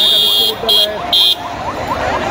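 Three shrill blasts of a whistle, one long and two short, blown in the middle of a marching crowd, over the steady noise and chanting of the crowd.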